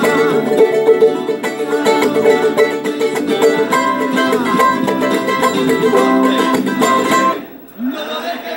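Charango strummed in a fast, steady rhythmic pattern, switching between D and C chords, with muted percussive strokes worked into the strum. The playing breaks off briefly near the end.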